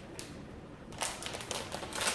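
Quick run of light clicks and crinkles beginning about a second in, as a plastic packet is picked up and handled on a kitchen counter.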